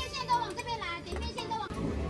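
A high-pitched voice, with low thuds underneath.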